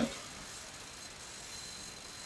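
Faint steady background hiss with a thin, steady high-pitched tone: room tone.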